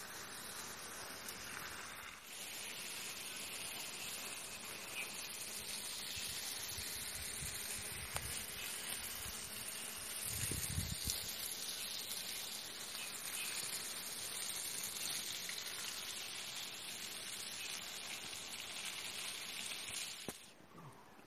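Steady hiss of outdoor ambience among blossoming pomelo trees, with a faint, thin high-pitched band running through it. A brief low rumble comes about ten seconds in.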